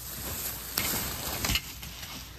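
Rustling and clatter of household items being handled and shoved aside, with a sharp knock just under a second in and another about a second and a half in, then it stops.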